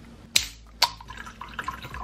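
Jägermeister poured from a glass bottle into a ceramic mug: two sharp clinks about half a second apart, then a light trickle of liquid.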